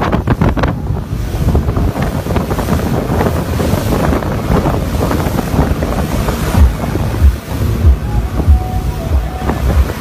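Speedboat running fast through choppy sea: rushing water and spray along the hull, with heavy wind buffeting on the microphone. In the second half, low thumps come about every half second.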